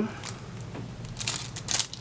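A Yu-Gi-Oh! card tin and its packaging being worked at by hand as it resists opening: soft, intermittent crinkling and scratching, with a few sharper crackles near the end.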